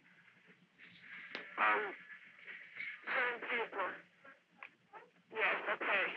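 Faint, muffled speech heard over a telephone line, thin and cut off in the highs, in short scattered bits under a low steady line hum.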